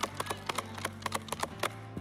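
A quick, uneven run of sharp knocks like galloping hoofbeats, about five or six a second, over a soft sustained keyboard pad.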